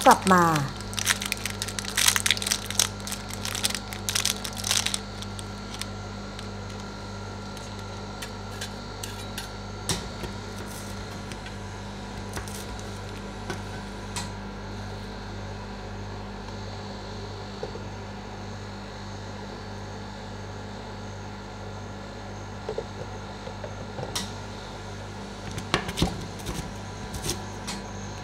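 Foil chocolate-bar wrapper crinkling and crackling for the first few seconds as it is torn open, then a steady low hum from the ice-pan machine with a few sharp clicks of steel spatulas striking the frozen steel plate.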